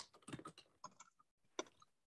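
Faint, irregular keystrokes on a computer keyboard: someone typing a message.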